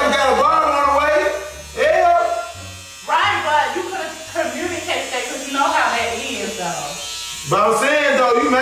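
Electric hair clippers buzzing steadily as they cut a man's hair, under a louder voice over background music.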